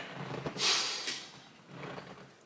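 Close rustling and handling noise on the microphone as a wired earbud headset and cable are moved, a hissing rustle that swells about half a second in and fades away within a second.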